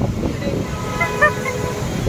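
A vehicle horn sounds one steady honk, just under a second long, about halfway through, over a continuous low rumble of road traffic.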